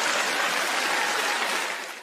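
Steady rushing noise that fades out near the end.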